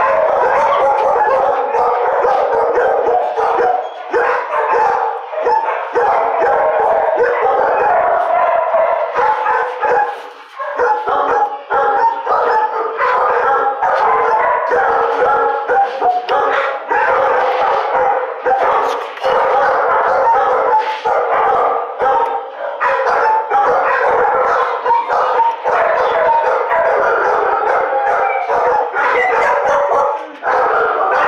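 Many kennelled dogs barking at once in a shelter kennel block, a loud continuous din that dips briefly about ten seconds in.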